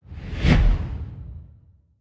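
Logo sting sound effect: a single whoosh over a deep low boom, swelling in quickly, peaking about half a second in, then fading out over about a second.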